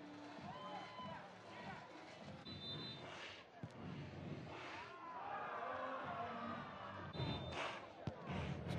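Stadium crowd noise right after a goal: a steady hum of the crowd with scattered shouting voices.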